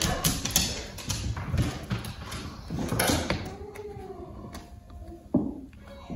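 Sharp taps and clicks of a hand tool working along a wooden headboard panel. About three and a half seconds in, a dog gives a soft, wavering whine.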